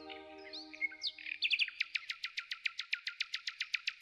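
Bird song: a fast, even trill of sharp repeated notes, about eight or nine a second, starting about a second in. Soft held music tones fade away at the start.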